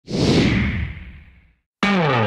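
A whoosh sound effect for an intro logo, starting at once and fading away over about a second and a half. After a short gap, a pitched sound sliding downward begins near the end.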